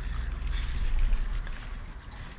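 Steady splashing and trickling of a small garden waterfall, with a low rumble on the microphone underneath.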